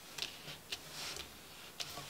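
Tarot cards handled on a wooden tabletop, giving about four faint, irregular light clicks.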